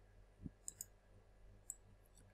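A few faint computer mouse clicks, including a quick double click, over near silence.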